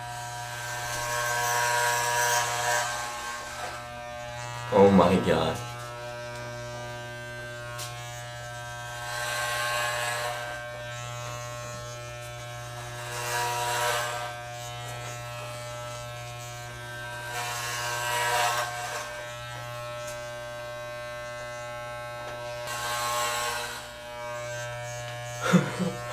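Corded electric hair clippers buzzing steadily while cutting long hair. About five louder, rasping swells come every few seconds as the blades pass through thick handfuls of hair.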